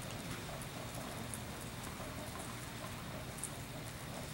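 Indoor tennis hall ambience: a steady low hum with faint, scattered taps and clicks.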